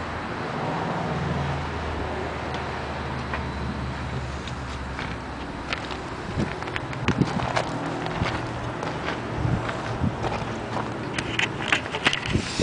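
A low steady motor hum that stops about five seconds in, followed by scattered light clicks and knocks of metal parts and equipment being handled.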